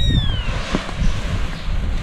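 Wind buffeting the microphone outdoors, a gusty low rumble over a steady hiss. In the first half second a single tone slides down in pitch and fades.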